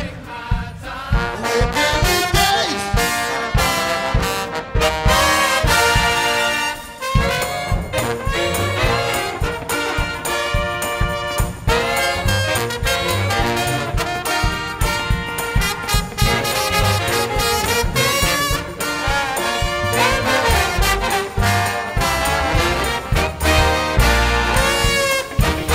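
Jazz big band playing a swing tune, with the brass section and drum kit, and a trombone taking the lead near the end.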